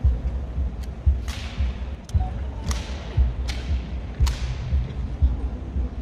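Honour-guard rifle drill: sharp wooden and metal clacks of hands slapping and spinning rifles and of rifle butts and boots striking the stone floor, about six strikes spaced under a second apart. Several of them ring on in a long echo, over a low rumbling background.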